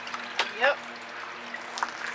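A woman says "yep" once, just after a sharp click, over a faint steady hum.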